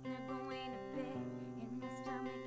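Acoustic guitar strummed in steady chords, changing chord about a second in, with a woman singing over it.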